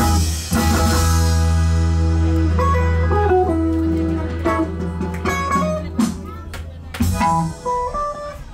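Live band ending a song: the beat stops about half a second in and the guitar and bass ring out on one long held final chord that slowly fades. A few plucked guitar notes come in near the end.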